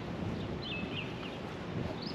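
Outdoor ambience: a steady hiss of background noise, with a small bird chirping a few quick high notes a little over half a second in.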